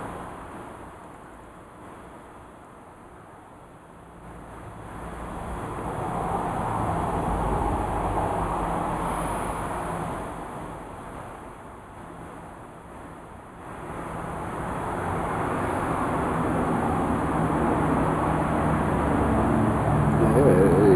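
Road traffic passing: a vehicle's noise swells and fades over several seconds around the middle, and another builds up again toward the end, over a steady low hum.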